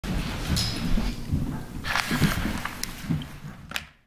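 Room noise of people moving about: a low rumble of shuffling and handling, several sharp clicks and knocks, and a faint murmur of indistinct voices.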